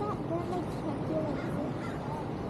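Bird calls, crow-like caws, over the voices of people nearby and a steady background rumble.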